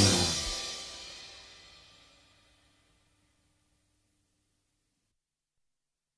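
The final chord of an instrumental guitar band track, with a cymbal crash, ringing out and fading away over about two seconds into silence.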